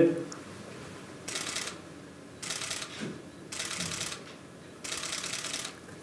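Four short bursts of rapid camera shutter clicks, each about half a second long and roughly a second apart.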